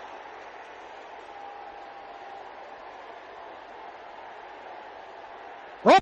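Steady low hiss of background noise. About a second and a half in, a faint held tone lasts for about a second. A voice begins speaking at the very end.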